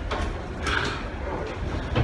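Low rumble of wind and handling noise on a handheld phone microphone carried while walking, with a short hissy rustle a little under a second in.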